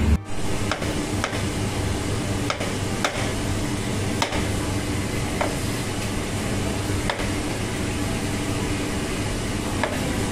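Knife slicing tomatoes on a plastic cutting board, the blade tapping the board irregularly, about once a second, over a steady background hiss.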